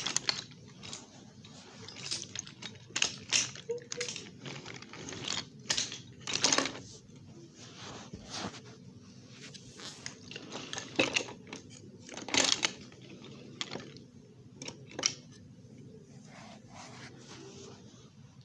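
Toy train cars rolling along wooden track, their wheels giving irregular clicks and clacks, with several louder clacks scattered through.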